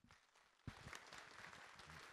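Faint applause, very low in level, starting about two-thirds of a second in after a moment of near silence.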